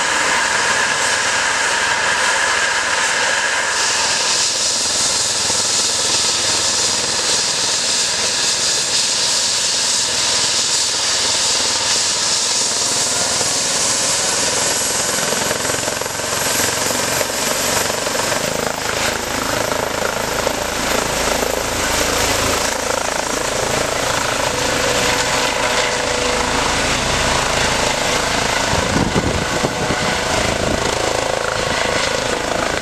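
EC135-type air ambulance helicopter running on the ground with its rotor turning and a high turbine whine that rises slowly in pitch. The rotor sound grows heavier in the second half as it powers up and lifts off near the end.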